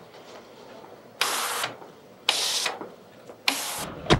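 Self-serve soda fountain dispensing in three short bursts about a second apart, each a half-second rush of liquid into a cup as different valves are pressed to mix several sodas.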